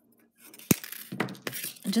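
Wire cutters snipping the end of a guitar string: one sharp metallic click about two-thirds of a second in, followed by a few lighter clicks and handling noise.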